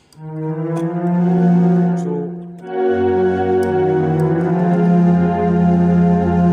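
Yamaha portable keyboard playing held chords on a strings voice. Just under three seconds in, the chord changes and a low bass note comes in underneath.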